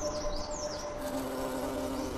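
A few high, short falling bird chirps in the first second, over soft sustained background music.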